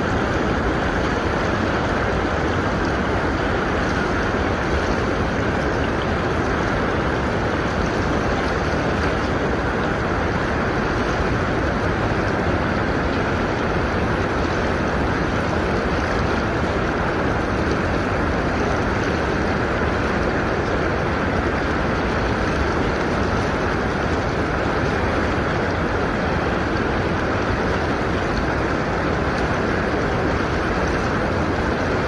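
Fast-flowing canal water rushing past the bank close by, a loud, steady, unbroken rush.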